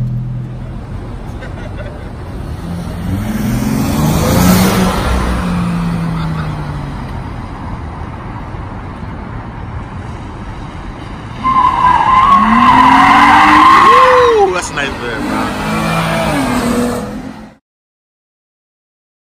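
A car engine idling and then revving, rising in pitch about four seconds in. About eleven and a half seconds in it turns much louder, with a wavering high squeal from the tires over more revving. The sound then cuts off abruptly near the end.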